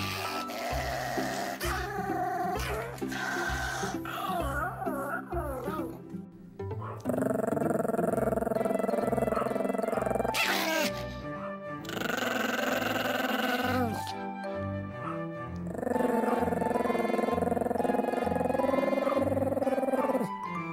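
Background music with a steady beat, with a Pomeranian growling over it in several stretches of a few seconds each.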